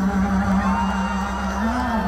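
Live pop song played loud through a concert sound system, heard from among the audience: one long held sung note over the band, with the crowd singing along and whooping.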